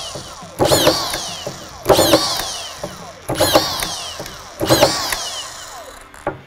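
Milwaukee 2866-20 cordless drywall screw gun with a 49-20-0001 collated magazine attachment driving strip screws into drywall, four in quick succession about a second and a half apart. Each is a short burst of the motor with a whine that falls in pitch as it winds down.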